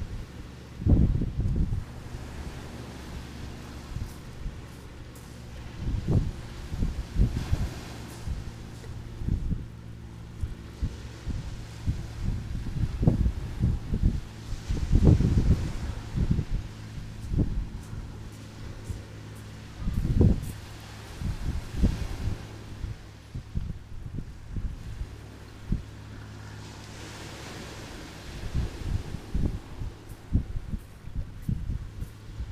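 Wind buffeting the camera's microphone in irregular low rumbling gusts, the strongest about a second in and around fifteen and twenty seconds in, over a steady low hum.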